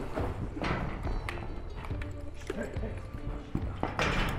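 Horses loping in soft arena dirt: irregular hoofbeats and thuds, over background music.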